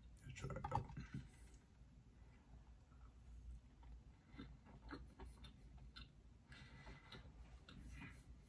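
Close-miked chewing of a soft chocolate caramel cookie: quiet mouth clicks and smacks, with a louder burst about half a second in.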